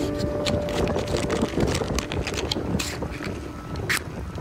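Harbour ambience: wind on the microphone over a steady low rumble, with scattered light clicks. A held music chord fades out in the first second and a half.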